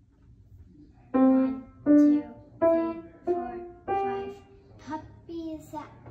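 Grand piano played one note at a time: after a short pause, a slow line of single notes starts about a second in and climbs step by step, with softer notes near the end.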